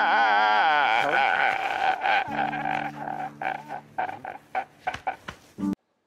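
A man wailing and sobbing: a long wavering cry that breaks into choked, stuttering sobs and gasps, with low held music notes underneath from about two seconds in. The sound cuts off suddenly near the end.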